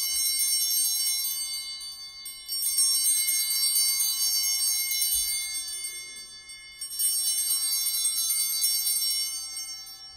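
Altar bells (Sanctus bells) rung three times with a bright, shimmering jingle, at the start, about two and a half seconds in and about seven seconds in, each ring fading away. Rung at the elevation of the chalice just after its consecration at Mass.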